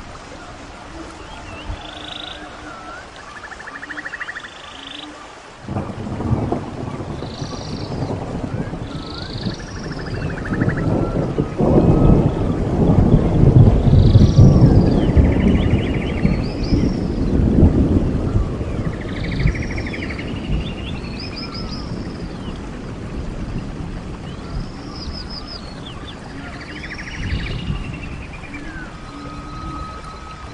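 A long roll of thunder starts suddenly about six seconds in, peaks in the middle and slowly fades, over steady rain. Birds keep calling throughout with short repeated chirps and trills.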